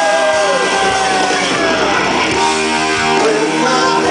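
Live rock band playing, with keyboards, guitar and drums. A long held note glides downward over the first second or so, then steady sustained chords come in.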